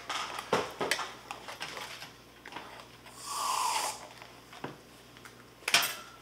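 A few light clicks of a knife against a metal baking pan, and a hiss lasting about a second just after three seconds in.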